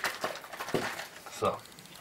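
Milk sloshing inside a cardboard carton as it is shaken briefly by hand: a quick run of irregular sloshing strokes in the first second or so.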